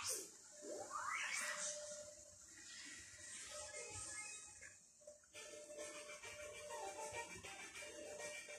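Faint music, with a rising swoosh about a second in.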